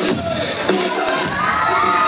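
A crowd of children cheering and shouting over dance music with a steady beat, their shouts rising and holding from about a second in.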